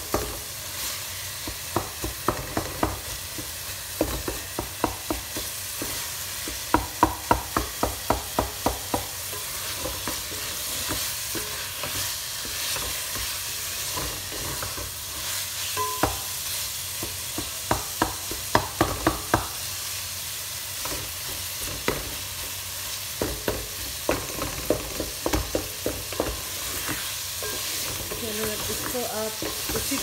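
Cauliflower and potato frying in oil in a metal pot with a steady sizzle, while a wooden spatula stirs and scrapes them, knocking against the pot. The knocks come scattered, with two longer runs of quick knocks about a quarter and two thirds of the way through.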